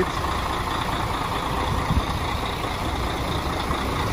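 Mercedes-Benz Axor truck's diesel engine idling steadily.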